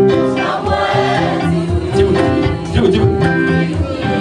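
Live gospel worship music: electric guitar and keyboard playing, with voices singing through a microphone.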